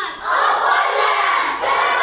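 A group of girls shouting together in answer to a rapped line: many voices at once, loud, starting just after the beginning.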